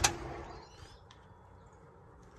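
A single sharp click or knock right at the start, then faint outdoor quiet with a few brief, faint bird chirps.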